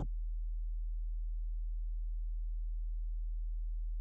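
A steady low hum, one deep tone with nothing else over it.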